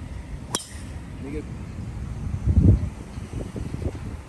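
Golf club striking a ball off the tee: one sharp crack about half a second in. A louder low, muffled rumble follows about two and a half seconds in.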